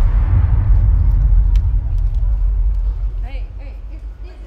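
A loud, deep rumble that fades over the last second or so, with faint voices in the background.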